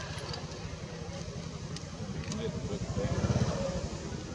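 A small engine running close by, its low pulsing rumble growing louder about three seconds in and then easing off, with faint voices in the background.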